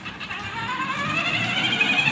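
Children's electric ride-on motorbike driving off: a whine that rises in pitch and grows louder as it speeds up.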